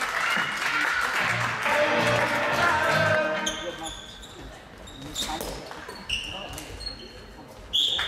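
Floorball being played in a sports hall. Voices shout for the first few seconds, then sports shoes squeak on the court floor and sticks clack against the plastic ball. A sharp hit comes shortly before the end, and the level rises again right after it.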